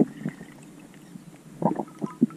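Muffled underwater knocks and rumbling picked up by a camera's microphone inside its waterproof housing during a freedive descent. There is one knock at the start and a short cluster of knocks near the end, over a faint low hum.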